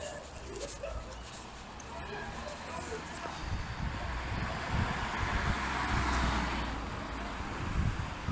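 A car passing along the street, its engine and tyre noise swelling over a few seconds, loudest about six seconds in, then fading.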